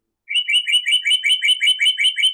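A bird chirping: a quick, even run of short, high, repeated chirps, about six a second, beginning just after the start.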